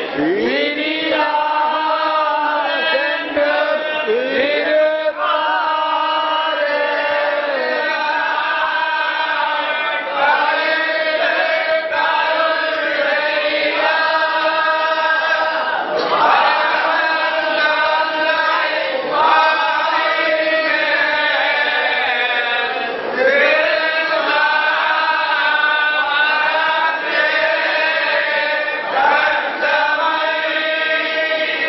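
A group of men chanting together in unison, a continuous Srivaishnava recitation in long phrases whose pitch slides up at the start of several phrases.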